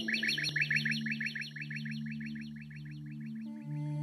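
A songbird's rapid trill of short, evenly repeated chirps, about ten a second, thinning out near the end, over a low steady drone from the music.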